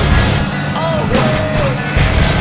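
Tractor engine running steadily under load, pulling a Horsch Terrano 4 MT cultivator through stubble, with music playing over it that has a gliding melody and a beat.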